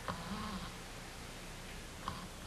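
A man drinking from a glass beer bottle: a sharp click as the bottle meets his mouth at the start, then soft drinking sounds, over a steady low hum and hiss.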